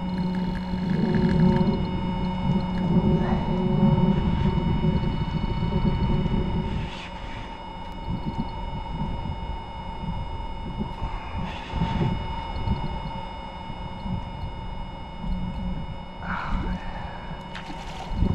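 A steady mechanical hum, with several thin high tones held throughout, over a loud low rumble that drops away about seven seconds in.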